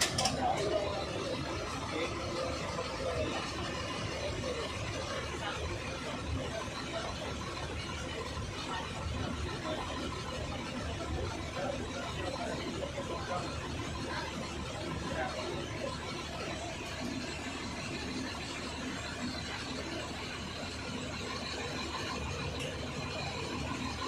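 Bus engine idling low and steady, heard from inside the cabin, with people talking indistinctly in the background.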